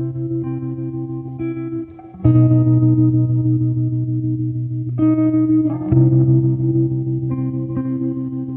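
Background music led by a guitar with effects, playing sustained chords that change every few seconds, with a brief dip in level about two seconds in.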